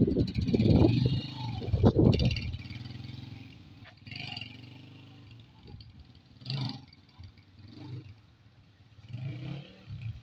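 Small motorcycle engine revving in surges as the bike pulls away, then fading steadily as it rides off into the distance. A few fainter swells of sound follow near the end.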